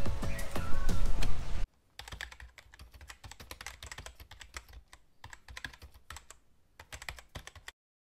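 Music, cut off suddenly about a second and a half in, then a computer keyboard typing: irregular key clicks for about six seconds, stopping shortly before the end.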